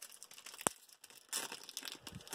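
Foil wrapper of a Pokémon card booster pack crinkling in the hands, with one sharp click about two-thirds of a second in and more crackling in the second half.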